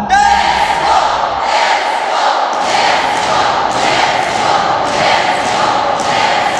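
A crowd shouting together in a large hall, over thuds about twice a second and a steady high note.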